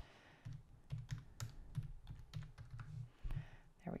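Typing on a computer keyboard: a quick, irregular run of faint key clicks as a phone number is keyed in.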